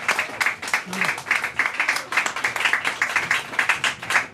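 Small audience applauding after a poem ends, many separate hand claps in a dense, irregular patter.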